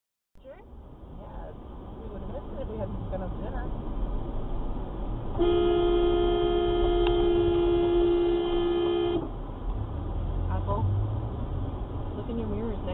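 A car horn held in one long steady blast of about four seconds, starting about five seconds in, over the rumble of road and engine noise in the car.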